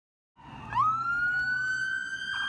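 Police car siren wailing: after a brief silence it sweeps quickly up in pitch about three-quarters of a second in, then holds a high, steady tone.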